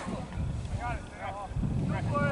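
Distant shouts on a soccer field, over low wind rumble on the microphone that grows stronger near the end.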